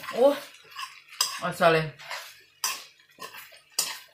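A cooking utensil scraping and clattering against a frying pan while stir-frying noodles and vegetables, with a sharp clatter about every second and a quarter.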